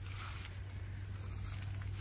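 Quiet outdoor background: a steady low rumble with a faint rustle over it and no distinct event.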